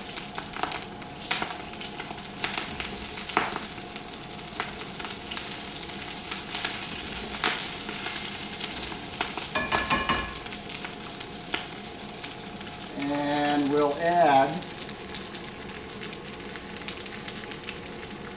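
Halved Brussels sprouts sizzling steadily in hot avocado oil in a wok on a gas wok burner, with scattered clicks and a brief metallic ring about halfway through as the wok is handled. Near three-quarters of the way through comes a short wavering pitched sound, like a person humming.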